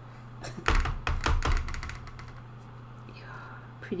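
A quick cluster of knocks and light thumps from things being handled on a table, over a steady low hum.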